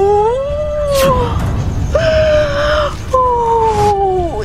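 A dog howling: three long howls of about a second each, each sagging in pitch at its end, with a sharp click about a second in.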